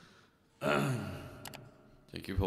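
A man's voiced sigh into the microphone, starting about half a second in and falling in pitch as it fades. A faint click follows.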